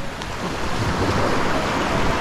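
Small waves breaking and washing up a sandy beach in a steady rush, with wind buffeting the microphone.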